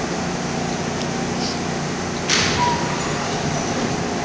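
A stopped subway train's steady ventilation hum. A little over two seconds in comes a short hiss of air as the car doors slide open, then a faint brief tone.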